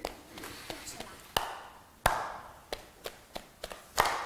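A rhythm beaten out by hand, clapped and patted, as a pattern for a class to echo. About seven sharp strokes: two louder single ones, then four quicker, evenly spaced ones near the end.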